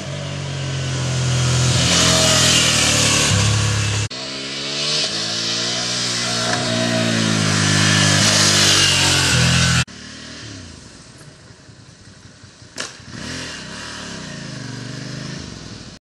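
Ducati Hypermotard 796's air-cooled L-twin engine accelerating along a winding road, its pitch rising and dipping as the rider works the throttle. The sound breaks off abruptly about four and about ten seconds in, and after the second break the engine is fainter and further away.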